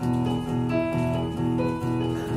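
Nord Stage 2 stage keyboard playing an instrumental passage of repeated chords, about three a second, in a steady rhythm.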